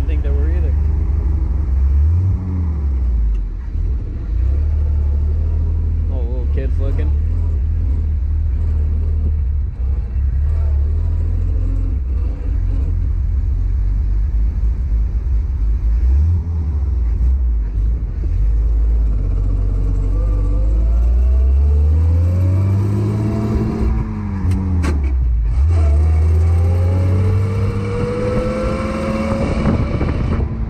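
1917 Hudson Super-Six's straight-six engine running under way, heard from the open cockpit. Its pitch climbs as the car accelerates, drops abruptly about three-quarters of the way through at a gear change, then climbs again.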